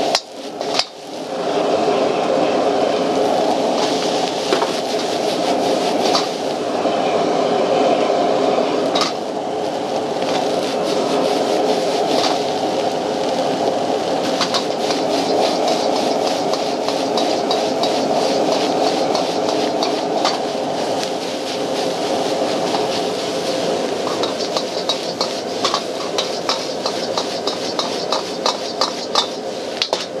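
Metal ladle scraping and knocking against a wok as egg fried rice is stir-fried and tossed, over the steady rush of a high-powered gas wok burner. In the last several seconds the ladle taps the wok quickly and repeatedly.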